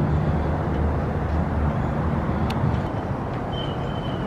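A steady low engine rumble, easing slightly in the second half, with a faint single click about halfway through.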